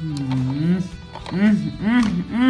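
A woman's voice making drawn-out wordless sounds: one long sound, then a few short rising-and-falling ones, over soft guitar background music.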